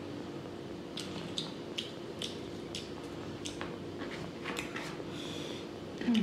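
Close-up eating sounds: wet chewing and mouth clicks, with fingers squishing rice into pork curry, heard as scattered short clicks over a steady low hum.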